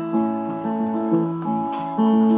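Live band playing a slow song intro: sustained keyboard and guitar chords that change about twice a second.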